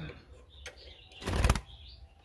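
Small wooden door of a wooden birdcage and its wire hook latch being worked by hand: a faint click about half a second in, then a brief clattering rattle of wire against wood about a second and a half in.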